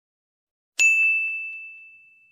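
A single bell-like ding, struck about three-quarters of a second in, ringing on one high tone that slowly fades away.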